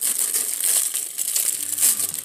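Thin plastic bag crinkling and rustling irregularly as hands work an action figure out of it.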